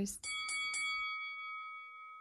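A bell chime sound effect: a few quick strikes about a quarter second apart, then one bell-like chord ringing on and slowly fading.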